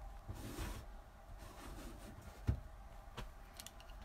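Faint rustling and movement noise in a small, enclosed room, with one soft low thump about two and a half seconds in and a few light clicks near the end.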